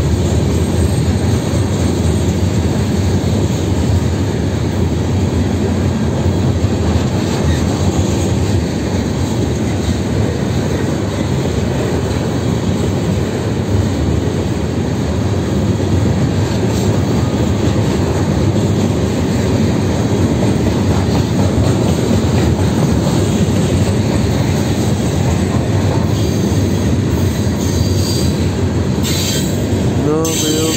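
Freight train's gondola cars rolling past close by, a loud, steady rumble of steel wheels on the rails.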